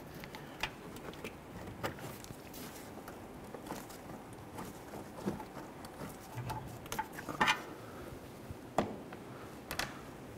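Screwdriver clicking and scraping against the plastic bumper trim and clips in a scatter of small ticks, with a few louder knocks about seven and a half seconds in and near the end.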